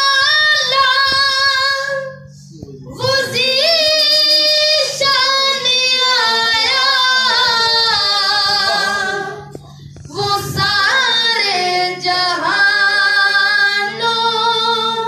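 A high solo voice singing a naat, a devotional song in praise of the Prophet Muhammad, in long ornamented phrases with gliding pitch, breaking twice for breath, about two seconds in and near ten seconds. A low steady tone sounds underneath from about two and a half seconds in.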